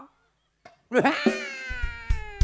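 A shadow-puppet performer's voice imitating a long animal cry, starting about a second in and sliding slowly down in pitch. Drum strokes sound under it.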